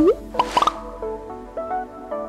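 Channel outro jingle: a rising cartoon-style pop sound effect, then a few quick popping blips about half a second in. Light plucked-string music follows.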